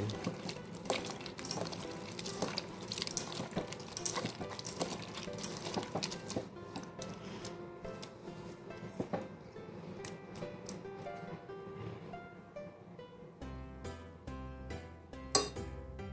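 Wet squelching and crackling of chopped radish being squeezed and kneaded by hand with salt in a pot, done to draw out the radish's bitter taste. Background music comes in under it and is plain near the end.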